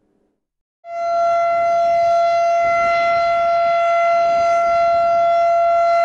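Civil defense siren sounding one steady, unwavering tone that comes on about a second in and holds without rising or falling. It is a test run of the memorial siren sounded for the 10 November Atatürk commemoration.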